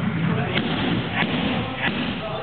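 Three sharp smacks of kicks or knees landing on hand-held striking pads, about two-thirds of a second apart, over the murmur of voices in a large gym hall.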